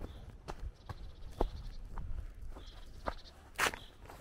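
Footsteps of a person walking outdoors, a run of short soft steps about every half second, with one louder brief crunch about three and a half seconds in.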